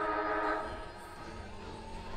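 Football ground siren sounding: a loud, steady horn-like tone that cuts off about half a second in, leaving quieter ground noise.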